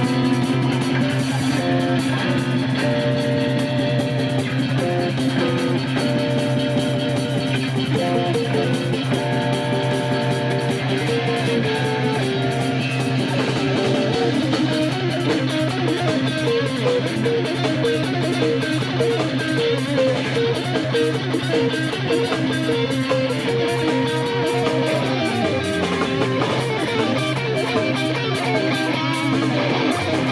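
Live rock band playing an instrumental passage: overdriven electric guitars, bass guitar and drum kit, with a steady beat and cymbals growing busier about halfway through.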